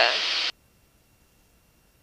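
Speech only: a single 'yeah' carried with hiss over a headset intercom, which cuts off abruptly about half a second in. After that there is near silence with a faint steady tone.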